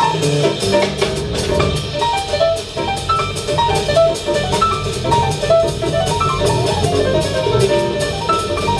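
Live jazz from a piano trio: a grand piano playing quick melodic lines over upright bass and a drum kit with steady cymbal strokes.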